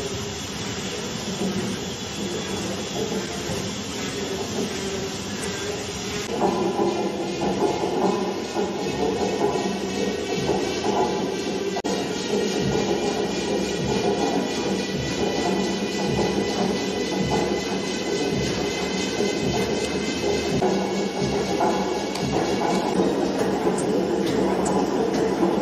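Horizontal tandem-compound stationary steam engine running. About six seconds in the sound grows fuller, and a slow, even beat of roughly one stroke a second sets in.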